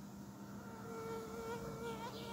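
Faint buzzing of a flying insect, with a steady higher whine that comes in about a second in over a low steady hum.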